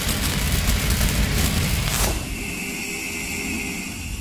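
Cinematic logo-reveal sound effect: the rumbling tail of a boom runs on loudly, a sharp hit about two seconds in cuts it off, and a quieter steady high hum lingers and fades.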